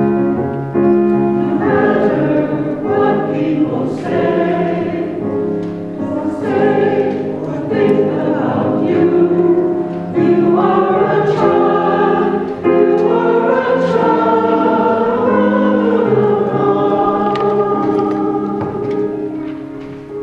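Church choir of mixed men's and women's voices singing an anthem, the sound tapering off near the end.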